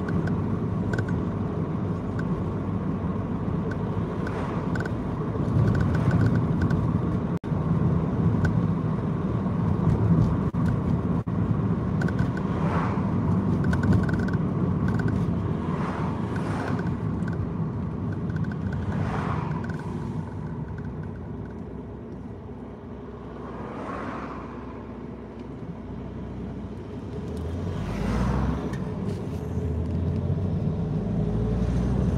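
Steady engine and tyre rumble heard inside a moving car, with oncoming vehicles swishing past several times; it eases off a little about three-quarters of the way through and builds again near the end.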